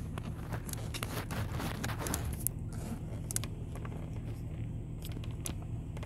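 Fingers rubbing on and clicking the plastic trim of a car's gear-selector console, with a scatter of small clicks over a low steady rumble.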